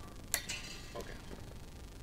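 A sharp metallic snip about a third of a second in, followed by brief high ringing, as a steel electric guitar string is clipped at the headstock; a few faint ticks of string and tuning machines follow.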